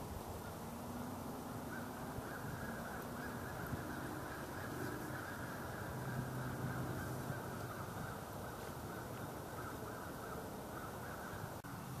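Faint outdoor ambience with distant birds calling steadily through most of the stretch.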